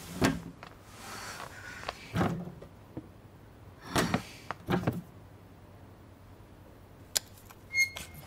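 A handful of separate knocks and thunks from a kitchen under-sink cabinet as its door is opened and the water valve inside is handled, about five in all spread over the few seconds; the valve turns out to be broken.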